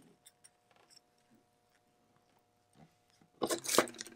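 Faint, scattered light clicks of fingers handling a watch and a plastic dial-protector card. About three and a half seconds in comes a brief, louder rustling scrape as the gloved fingers pull away from the watch.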